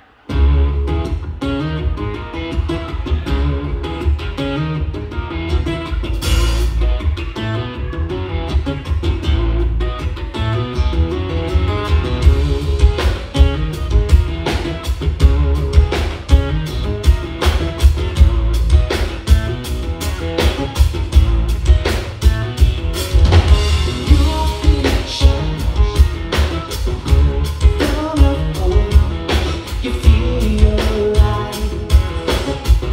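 Live rock duo: acoustic-electric guitar and drum kit come in together suddenly and play a driving song, with a man singing over it. The drumming gets busier with steady hits from about halfway in.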